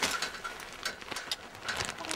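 Rustling and scattered light clicks and knocks of household things being handled and moved about, with a sharp click at the start.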